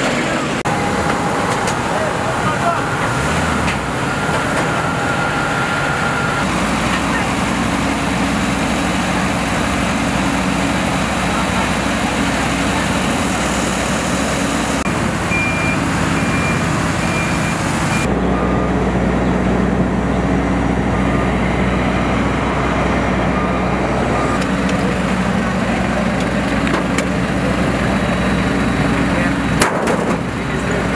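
Steady airport apron noise: aircraft and ground-equipment engines running, with voices in the background. The sound changes abruptly twice, about six and eighteen seconds in.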